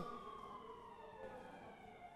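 Faint siren-like wailing tone, a few pitched lines gliding slowly down in pitch, from the background sound bed of a TV news broadcast.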